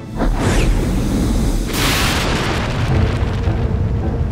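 Cartoon volcano eruption sound effect: a deep rumble that starts suddenly, with a loud blast about two seconds in, over background music.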